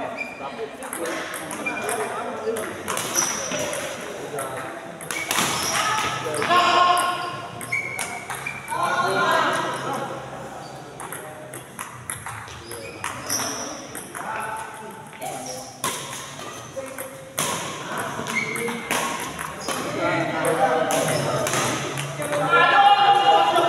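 Badminton rackets hitting a shuttlecock in a doubles rally, sharp hits at irregular intervals, with people talking over them.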